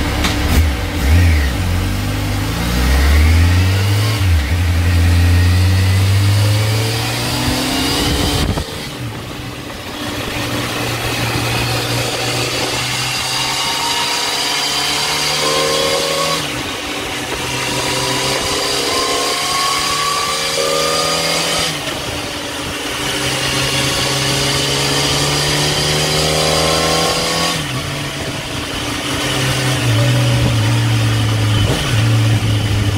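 2009 Yamaha FZ1's 998 cc inline-four revving up on a dyno through its aftermarket exhaust. The engine is run repeatedly during ECU tuning: each climb in pitch lasts about four to five seconds and ends in a sudden drop, about five times over.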